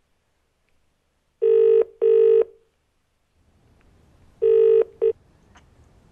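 Telephone ringing in the British double-ring pattern: two pairs of short rings about three seconds apart. The second pair stops short as the call is answered, leaving a faint line hiss.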